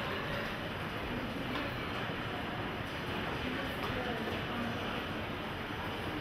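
Steady background noise of a large indoor space with faint, indistinct voices of people talking.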